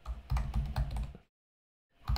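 Typing on a computer keyboard: a quick run of keystrokes that stops a little over a second in.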